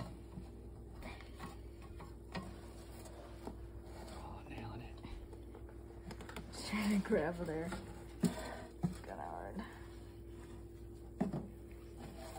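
Metal spatula scraping and clicking against an air fryer's perforated cooking tray as a cooked tortilla is scooped off it, with a few sharp clicks spread through, over a faint steady hum.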